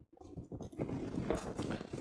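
Faint rustling of hands and clothing on the arm, with a few soft clicks, as the forearm is gripped and the elbow is moved.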